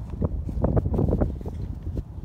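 Wind rumbling on the microphone of a handheld camera carried outdoors, with irregular rustling knocks from handling.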